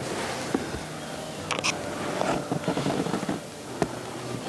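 Rustling, crackling handling noise from a kneeling hunter shifting on dry leaf litter and bringing his scoped rifle down from his shoulder, with two sharp clicks, one about a second and a half in and one near the end.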